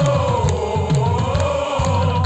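Live heavy metal band music: a long held note sways slightly in pitch over a steady bass and drum beat.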